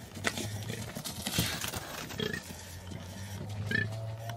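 Warthog calls in a few short, separate sounds over a steady low hum.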